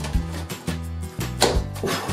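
Background music, with a sharp snap as a cardboard jumping frog, powered by four stretched rubber bands, is released and its two cardboard squares slap together to launch it, about one and a half seconds in.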